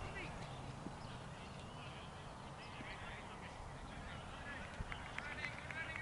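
Faint honking calls of geese, sparse at first and coming more often in the last second or so.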